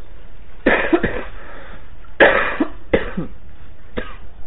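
A person coughing three times, about a second in, just after two seconds and about three seconds in, over a steady background hiss.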